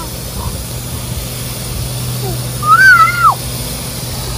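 A toddler's short high-pitched squeal about three seconds in: it rises slightly, then slides down and stops. A steady low hum runs underneath.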